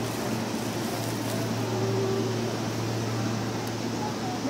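Steady low hum of a stationary Seibu 2000 series electric train's onboard equipment, with a faint short tone about two seconds in.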